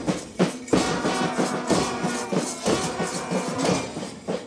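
School marching band playing: bugles and trumpets sounding a tune over a steady march beat of drums and cymbals.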